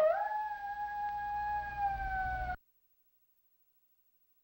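A single long wolf howl that swoops up into a held note, sagging slowly in pitch, then cuts off suddenly about two and a half seconds in.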